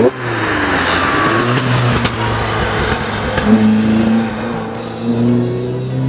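Fiat Ritmo Abarth 130 TC's Lampredi twin-cam four-cylinder engine driven hard: its note falls in pitch in the first second, then runs on under load. A couple of sharp cracks come from the exhaust popping.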